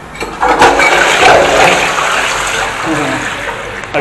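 Squat toilet's cistern flushing from its push button: a rush of water starts about half a second in, is loudest for the next second or so, then slowly eases off.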